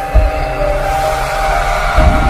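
Cinematic intro music: sustained synth tones with a deep bass hit just after the start, a whoosh that swells through the second half, and another low hit at the end.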